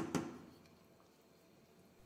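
Near silence: room tone, after a rhythmic tapping with a steady low hum fades out in the first half second.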